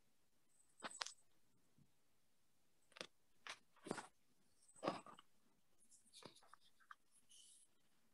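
Near silence broken by a string of faint, scattered clicks and knocks, with a brief hiss near the end.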